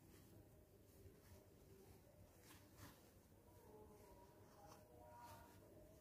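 Near silence: room tone with a few faint, soft ticks.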